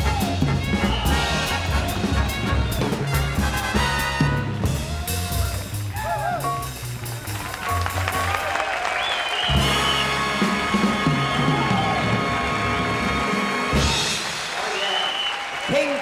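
Swing-style band music with brass playing, with shouting voices over it; held horn chords come in about halfway through.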